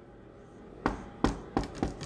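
Dry-erase marker knocking against a whiteboard while writing: four short, sharp taps in the second half.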